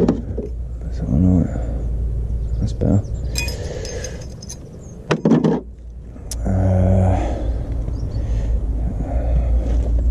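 Power tools and metal parts being handled in a plastic tool case, with a short run of light metal clinks, over a low rumble. A steady engine hum sets in about two-thirds of the way through.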